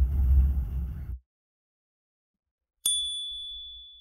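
Low background hum from the recording, cutting off about a second in. Then, about three seconds in, a single bright electronic ding that rings and fades over roughly a second: the chime of an animated subscribe-button outro.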